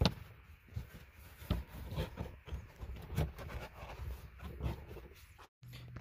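Rustling and scraping of a gloved hand working a power wire down behind a carpeted trim panel, with scattered small clicks and knocks. A sharp click comes right at the start, and the sound cuts out briefly near the end.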